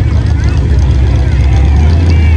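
Chevrolet C10 pickup's engine running with a loud, steady low rumble, with crowd chatter over it.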